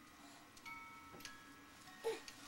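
Faint tinkling music-box-style lullaby from a musical crib toy: a few single bell-like notes at different pitches, each starting with a light tick and ringing on briefly.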